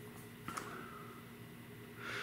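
Quiet room tone with one faint click about half a second in.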